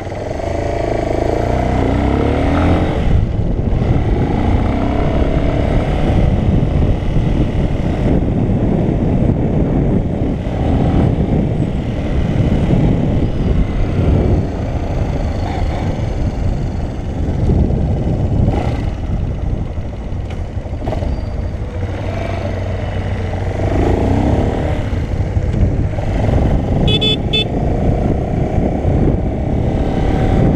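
Motorcycle engine running under way, with heavy wind noise on the microphone. The engine pitch rises twice as it accelerates, once early and again about three-quarters of the way through.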